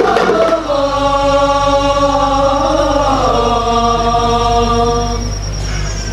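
Teenage boys' voices singing a qasidah mawal: a long, drawn-out vocal line with slow, ornamented turns in pitch, unaccompanied, as the frame drums stop right at the start.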